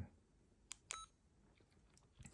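Faint key presses on a Yaesu FT-70D handheld transceiver's keypad: a click, then about a second in another press with a short, high beep, the radio's key beep as the memory channel number is entered.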